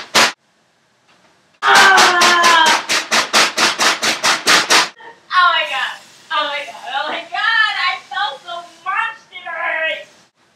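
A person's voice: a loud, rapidly pulsed vocal sound of about four to five pulses a second, falling in pitch, lasting about three seconds, then softer wordless voice sounds with rising and falling pitch.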